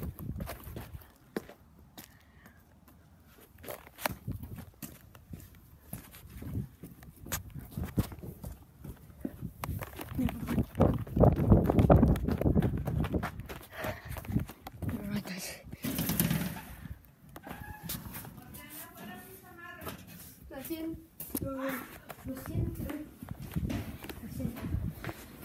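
Rustling, rubbing and clicking of a handheld phone camera being carried and moved about, with a louder stretch of handling noise about halfway through. A muffled voice comes in near the end.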